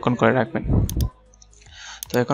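A man's voice speaking briefly, then two computer mouse clicks in quick succession just before a second in.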